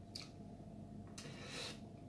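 Faint breathing of a person tasting whisky between words: a short mouth click, then a soft breath out about a second in.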